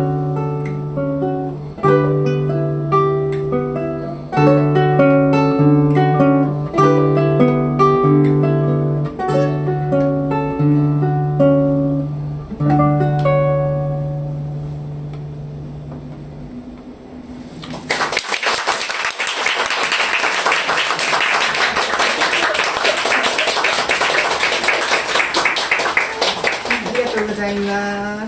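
Two classical guitars, a 1988 Alberto Nejime Ohno and a 2011 Sakae Ishii, play a duet of plucked notes over a repeated low bass note, closing on a final chord that rings out. About a second later a small audience applauds for roughly ten seconds, and a short laugh follows near the end.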